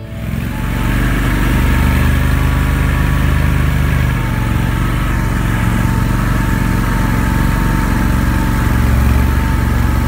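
Amphibious ATV's engine running steadily under way, heard from on board, rising in over the first second. A thin steady whine runs above the engine noise.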